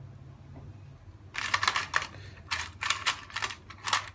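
Nd:YAG laser pulses striking black test paper, each a sharp snap. They come in two quick clusters, then one more near the end.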